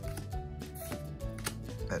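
Soft background music with held notes, over a scatter of sharp, irregular clicks and taps.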